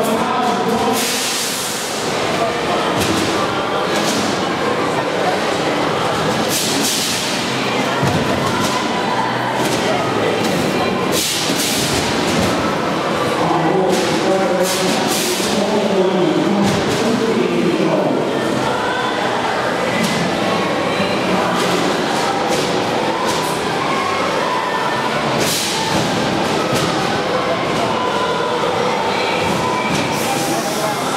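Loud music and a voice over an arena public-address system, echoing in a large hall, with occasional sharp knocks and thuds from combat robots hitting each other and the arena.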